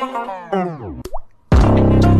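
Edited background music with a transition effect: the tune slides down in pitch and stops, a short rising zip follows, then after a brief gap a loud, low, sustained note hits about a second and a half in as the next track comes in.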